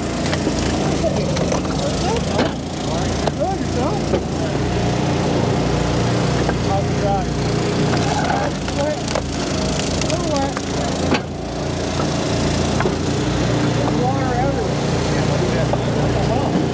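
Eastonmade hydraulic wood splitter's engine running steadily under load while the ram drives logs through the splitting wedge. The wood cracks sharply several times as it splits, and the split pieces clatter onto the pile.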